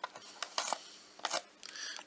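Thin cardboard blind box being torn open along its perforated flap: a run of small clicks and crackles, with a short rasp near the end.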